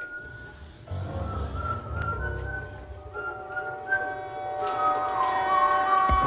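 A person whistling a wandering tune over soft background music, the melody gliding between notes.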